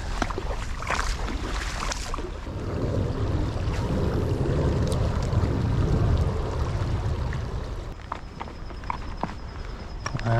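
Footsteps wading and crunching through a shallow rocky creek, with the riffle's water running and a few sharp clicks early on. A low rumble swells and fades through the middle.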